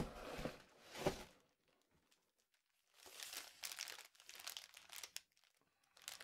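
Faint rustling and crinkling of packaging being handled and pulled out of a cardboard shipping box, in two stretches with a short quiet gap between them.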